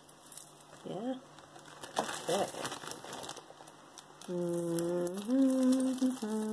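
Plastic bag crinkling as jewellery is handled, with a woman's voice holding a few steady hummed notes in the second half, stepping up in pitch partway through.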